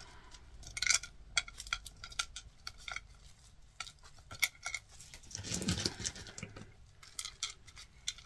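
Small cast resin skulls clicking and clinking, irregularly and many times, as they are handled and dropped one by one into a tall mould.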